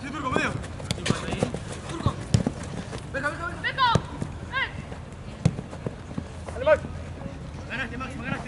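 Football players' running footsteps and ball kicks on an artificial-turf pitch, with several short shouts from the players.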